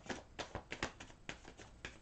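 A Rider-Waite tarot deck being shuffled in the hands: an irregular run of soft card clicks, about five a second.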